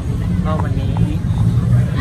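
Steady low rumble of an idling vehicle engine, with a man's voice briefly speaking Thai over it.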